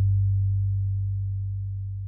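The last low bass note of a children's song's accompaniment, held as a steady deep tone that slowly fades.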